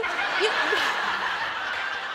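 Studio audience laughing together, a steady wash of laughter that eases off slightly toward the end, with a short laugh from one woman in the first second.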